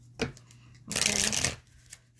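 Tarot cards being shuffled by hand: a brief tap, then a dense burst of shuffling noise lasting under a second.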